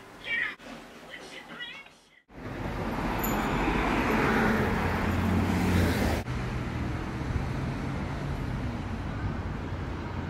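City street traffic noise: a steady wash of passing cars and engine hum beside a road, starting abruptly about two seconds in. Before it, quieter indoor sounds with a few brief voice-like sounds.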